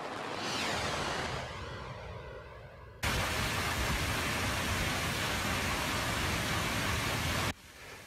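A news-transition whoosh that fades out, then heavy rain pouring down on a parking lot: a dense, steady hiss that starts abruptly about three seconds in and cuts off suddenly just before the end.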